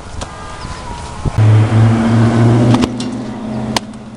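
A motor vehicle engine running close by: a loud, steady low hum that comes in suddenly a little over a second in and holds, with a few sharp clicks over it.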